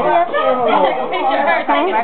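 Several people's voices talking at once, with no pause.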